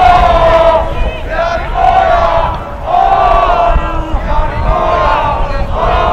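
A school soccer supporters' section chanting in unison: many young voices shouting repeated, drawn-out phrases about a second long, loud and steady.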